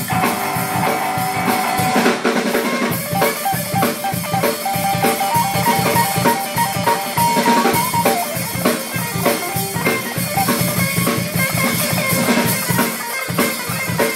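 Live rock band playing: a drum kit keeps a steady, busy beat on bass drum and snare while a guitar plays along, picking out short held single notes in the middle.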